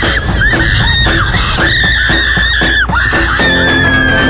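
Two young women screaming on a Slingshot reverse-bungee ride as they are flung into the air: long, high-pitched screams that break off and start again several times, with music beneath.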